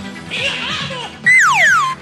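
A falling whistle-like sound effect: a loud tone that slides steeply down in pitch for under a second, starting a little past halfway, over studio music and audience noise.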